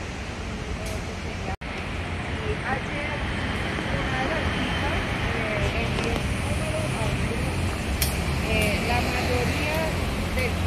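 Steady rumble of road traffic with faint, indistinct voices of people in the distance. The sound drops out briefly about one and a half seconds in.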